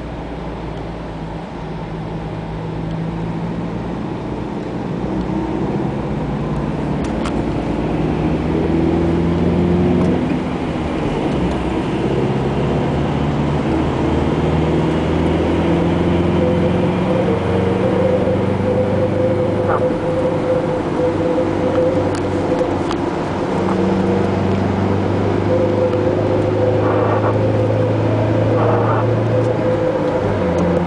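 Car engine and road noise heard inside the cabin while driving, the engine note stepping up and down as the car speeds up and eases off, growing louder over the first ten seconds.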